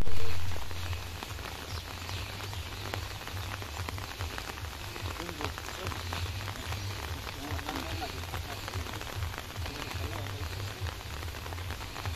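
Light rain falling steadily, a fine crackling patter, with wind buffeting the microphone in a fluctuating low rumble. A loud thump comes right at the start.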